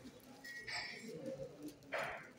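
A dove cooing softly, with short rustling noises about a second in and near the end.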